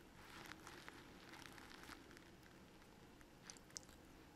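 Near silence: faint room tone with a few small ticks, then two short clicks close together near the end, a computer mouse clicking to select a file.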